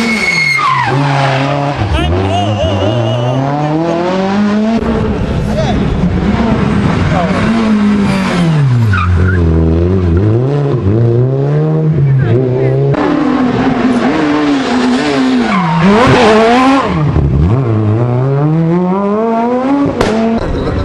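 Rally cars, among them a Renault Clio RS, running hard through a tight tarmac corner: the engine note drops as they brake and downshift, then climbs steeply as they accelerate away, several times over, with tyre squeal. The sound jumps abruptly between passes where the footage is cut.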